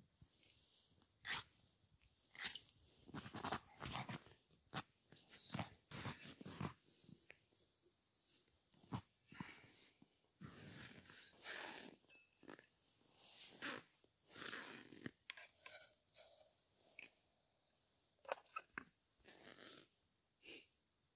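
Faint, irregular crunching and scraping of snow being scooped into a small metal cooking pot.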